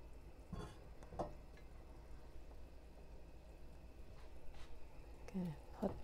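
Quiet kitchen handling: a few faint clinks and knocks from a spoon and bowl of cut potato and taro, about half a second and a second in and again later, over a low steady hum. A brief vocal sound comes near the end.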